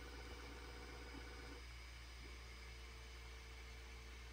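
Faint steady hum of a Bambu Lab P1P 3D printer running its flow calibration, with a thin whine that drops out about one and a half seconds in and returns about half a second later.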